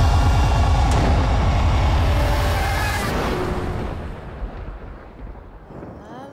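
Trailer score and sound design: a deep, throbbing low rumble under sustained tones, loud at first and fading away over the last three seconds.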